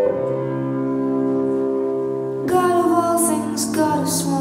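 Recorded music for the dance routine: sustained piano chords, then a female voice begins singing about halfway through.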